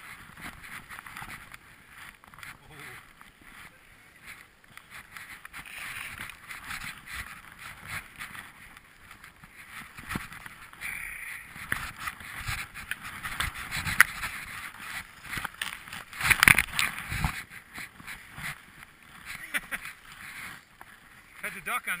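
Skis hissing and swishing through deep powder snow, with scattered clicks and knocks of skis and poles. There are a few louder rushes, the loudest about sixteen seconds in.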